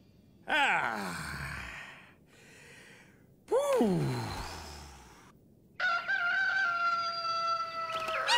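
A cartoon man groans twice, each groan a long sound falling in pitch, about half a second and three and a half seconds in. From about six seconds in a long, steady pitched call is held, with a slight wobble.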